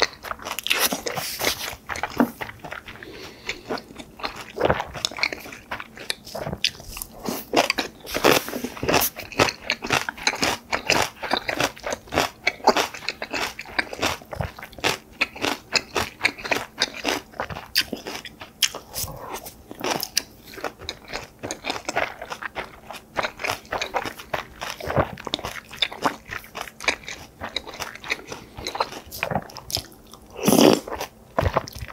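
Close-miked chewing and crunching of a mouthful of beef-tartare bibimbap, with many short wet mouth clicks. A metal spoon scrapes the stainless steel pan now and then.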